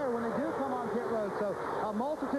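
Speech: a man's voice in race-broadcast commentary, talking throughout.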